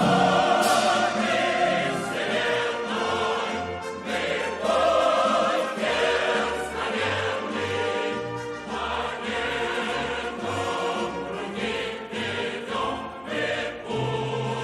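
An estrada orchestra playing a song passage, with sustained choir-like voices carried over a moving bass line.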